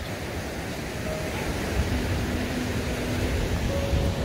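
Ocean surf washing on the shore, a steady rushing noise, with wind buffeting the microphone in low gusty rumbles.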